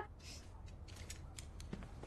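A few faint, light clicks and a brief soft rustle over a low steady room hum, from clothing being handled.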